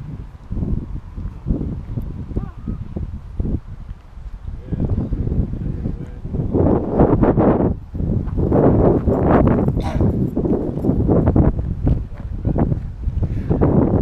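Wind buffeting the microphone in irregular gusts, louder in the second half, with indistinct voices.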